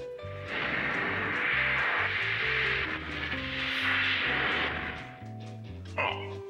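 Background music with a pulsing bass line. From about half a second in until about five seconds a loud hissing whoosh rides over it, a teleportation sound effect.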